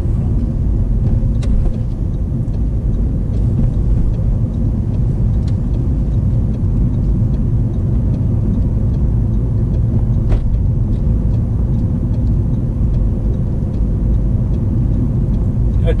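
Steady in-cabin car noise from a manual hatchback held in second gear: engine and tyre rumble at a constant level, with a few faint clicks.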